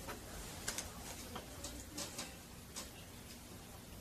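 Chalk writing on a chalkboard: a series of faint, irregularly spaced ticks and taps as the chalk strikes and drags across the board.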